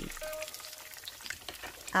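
Breaded pork cutlet shallow-frying in hot oil in a frying pan: a steady sizzle full of fine crackles.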